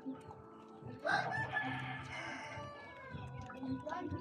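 A rooster crowing once, starting about a second in and lasting about two seconds, the loudest sound here. Faint scattered clicks of scratching on the ground around it.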